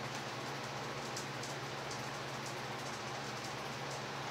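Steady whooshing noise of electric fans and an air conditioner running, with a constant low hum underneath.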